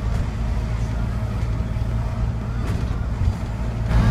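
Steady low rumble of a bus's engine and road noise, heard from inside the passenger cabin.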